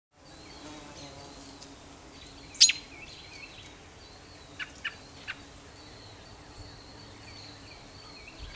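Outdoor ambience with birds calling: one sharp high call a little over two seconds in and a few short chirps around the middle, over a faint steady background.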